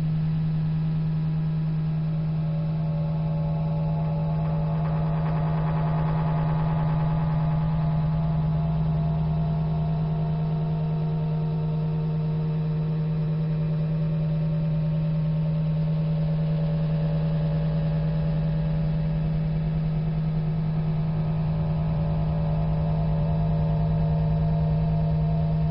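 A steady low drone tone that holds unbroken, with fainter higher tones fading in about four seconds in and lingering over it.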